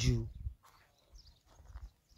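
A man's voice ends its phrase within the first half second, then there is a short pause holding only faint low rumbling noise.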